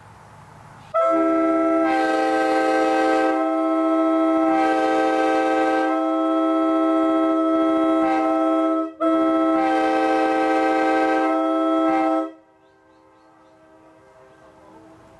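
A 1990s Holden double-tagged Nathan K5LA five-chime locomotive air horn sounding a steady chord. There is one long blast of about eight seconds, a momentary break, then a second blast of about three seconds that cuts off.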